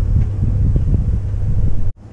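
Wind buffeting the camera microphone: a loud, irregular low rumble that cuts off abruptly near the end.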